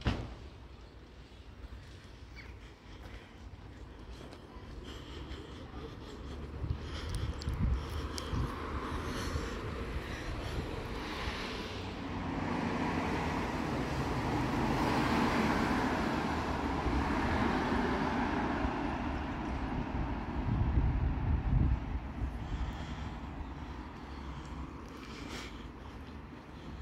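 Street traffic: a passing vehicle, its noise swelling over several seconds and then fading. Wind buffets the microphone in low gusts.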